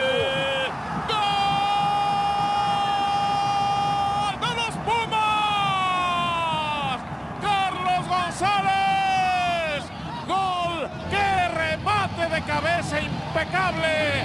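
Spanish-language football commentator's drawn-out goal cry: one shout held at a steady pitch for about three seconds, then falling shouts and a quick run of short, excited calls.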